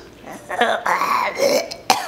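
A person's drawn-out wordless vocal sound, lasting about a second and rising then falling in pitch, followed by a short sharp click near the end.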